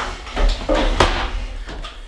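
A few sharp knocks and clinks from a small spatula and a small metal ramekin being handled on a wooden cutting board, the sharpest about a second in.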